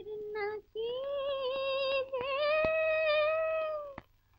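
A woman's solo singing voice from an old Hindi film song, vocalising without words: a short note, then one long held note that wavers slightly and dips about two seconds in, with little or no accompaniment.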